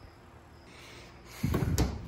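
A dull thump with a sharp click near the end, after a quiet stretch of room tone.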